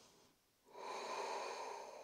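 A woman breathing audibly through the nose: a faint breath right at the start, then a long, soft out-breath beginning about two-thirds of a second in and lasting about a second and a half.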